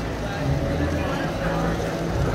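Large-scale model train running on its track: a steady low motor hum and rumble of wheels rolling on rails, with people talking indistinctly.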